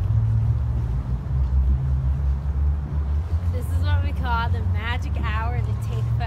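Steady low outdoor rumble, with a person's voice talking from about three and a half seconds in.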